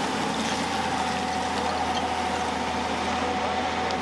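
Tata Hitachi tracked excavator running steadily while digging, a constant engine hum with a steady whine over it.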